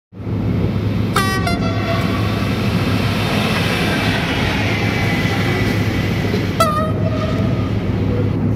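A train running with a steady rumble, its horn sounding twice: a short blast about a second in and a longer one near the end.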